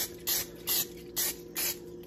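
Aerosol cooking-oil spray can giving a rapid series of short hissing spritzes, about two a second, onto breaded fish fillets in an air fryer basket.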